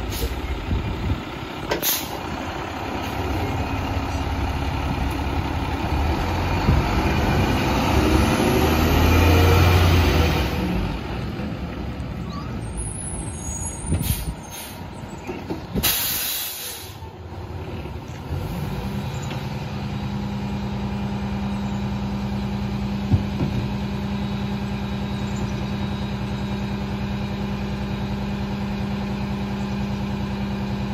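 Rear-loader garbage truck's diesel engine pulling away and revving up, rising in pitch to its loudest about a third of the way in, then several sharp air-brake hisses as it stops. The engine then settles into a steady drone with one held tone, with a single clank a little later.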